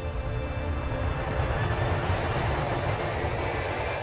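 Jet noise of a B-2 Spirit stealth bomber's turbofan engines as it flies past, a broad rushing sound that grows louder over the first two seconds and then holds steady.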